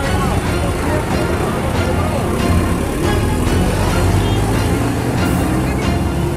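A bus engine running, with people's voices and music mixed over it.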